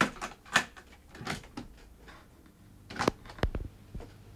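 A cassette deck being handled by hand: a series of sharp plastic clicks and clunks as a tape is loaded, the door shut and the transport keys pressed, with a close pair about three seconds in.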